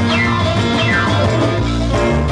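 Live band music with an electric guitar solo: the guitar plays two quick runs that slide downward in pitch, near the start and just under a second in, over bass guitar and percussion.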